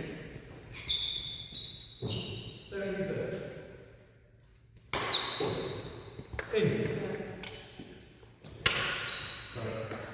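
Badminton rackets striking a shuttlecock in a doubles rally: sharp hits roughly every second, some with a short ringing ping, echoing in a large hall, with a brief lull about four seconds in.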